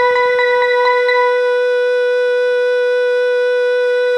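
A single held electronic note with a woodwind-like sound, one steady unchanging pitch, with a few faint ticks in the first second.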